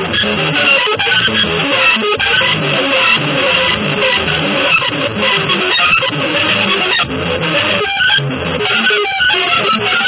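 Electric guitar music: a busy, unbroken stream of quickly changing notes.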